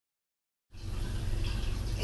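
Dead silence, then under a second in, steady low room noise begins: an even hiss with a low hum beneath it.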